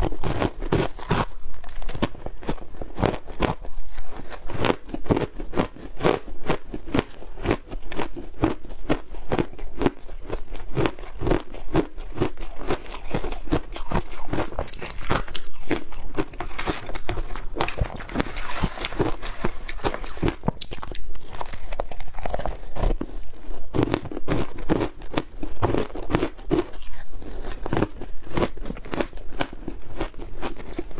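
Frozen flavoured ice being bitten and chewed close to a clip-on microphone: rapid, steady crunching, several crunches a second.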